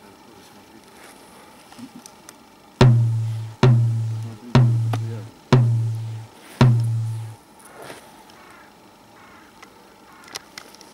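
Five heavy, booming thumps about a second apart, each trailing off in a low hum.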